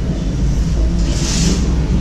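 Steady low rumble of cafe background noise, with a short hiss a little over a second in.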